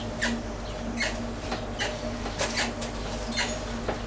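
Short high squeaks at irregular intervals, about two a second, from a squeaky potter's wheel, over a steady low hum.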